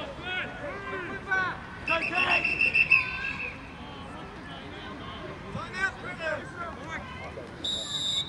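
A referee's whistle blows once for about a second and a half, starting about two seconds in, and a second, higher-pitched whistle sounds briefly at the very end, over sideline chatter and shouting.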